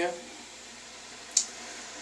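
Handheld garment steamer warming up: a faint steady hiss, with one short sharp spit about one and a half seconds in.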